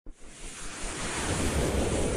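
Rushing whoosh sound effect of an animated logo intro, a noise swell that grows steadily louder from silence.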